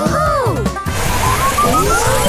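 Cartoon sound effects over background music: a cluster of swooping pitch glides in the first second, then from about a second in a rasping scrape under a rising tone, as a giant crayon draws a line across the page.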